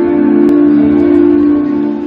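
Live band music: a steady held chord, fading slightly near the end.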